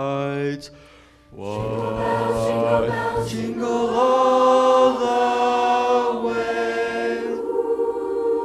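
A male solo singer with a handheld microphone ends a held note, and after a brief pause a choir comes in, singing sustained chords that shift a few times.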